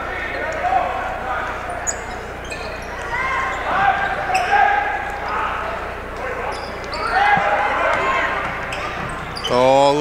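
A basketball being dribbled on a hardwood gym floor, with voices calling out in the gym.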